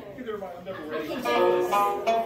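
Polka dance music starts about a second in, a tune of steady held notes, with people talking quietly under and before it.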